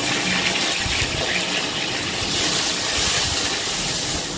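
Onions frying in hot oil in a kadai, a steady sizzling hiss.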